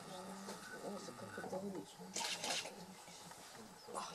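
Low, indistinct murmuring human voices, with a couple of short rustling noises about halfway through.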